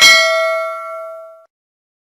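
A single bell ding from a subscribe-animation notification-bell sound effect: one bright metallic strike with several ringing overtones that fades away within about a second and a half.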